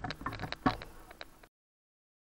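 A handful of light clicks and taps of handling, uneven in spacing, then the sound cuts off abruptly to dead silence about one and a half seconds in.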